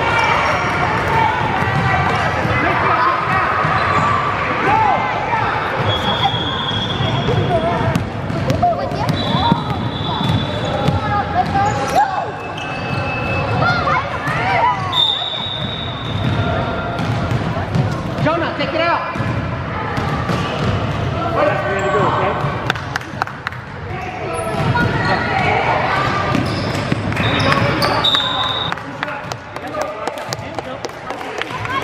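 Basketball dribbling and bouncing on a hardwood gym floor under a continuous hubbub of players' and spectators' voices echoing in a large gym. Several short, high-pitched squeaks cut through the noise.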